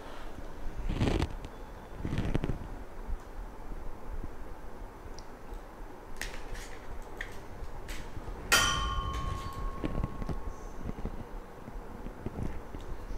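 Handling noises from moving a large plastic statue and the camera on a tabletop: a few soft knocks and rubs, then one sharp clink about eight and a half seconds in that rings briefly.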